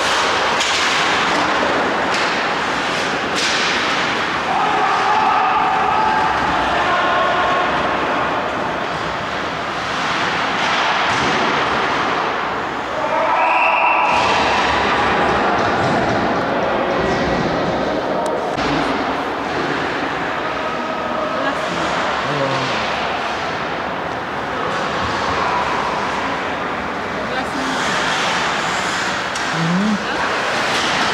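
Ice hockey play: players shouting and calling to each other, skates and sticks scraping on the ice, and repeated thuds and knocks from the puck and bodies hitting the boards.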